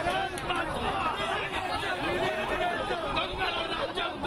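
Many men's voices talking over one another in a jostling crowd, a continuous babble with no single clear speaker.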